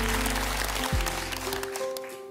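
Audience applause fading away over low sustained keyboard notes, then soft piano notes begin near the end.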